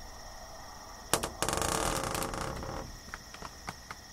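A sharp click about a second in, then about a second and a half of close, rough rustling noise and a few scattered clicks near the end, over a steady high chorus of evening insects.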